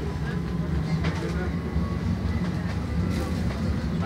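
Tram running, heard from inside a crowded passenger car: a steady low rumble of the car on the rails.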